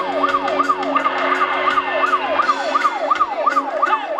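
A siren effect wails over live band music, sweeping up and down in pitch about three times a second, while the drummer's cymbals keep time underneath.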